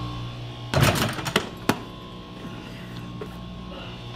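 A basketball knocking against a small wall-mounted hoop and backboard and bouncing: a cluster of sharp knocks about a second in, then two more single thumps soon after, over a steady low hum.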